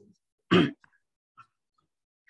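A person clearing their throat once, briefly, about half a second in.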